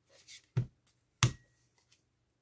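A deck of playing cards being cut and handled by hand: a brief soft rustle of cards, then two sharp thumps about two-thirds of a second apart.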